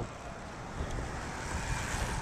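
Wind rushing over the microphone, a steady low rumble, with a few faint ticks.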